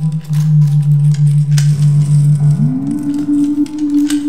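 Dark ambient synth drone: a low held tone that slides up to a higher held pitch about two and a half seconds in, with scattered faint clicks.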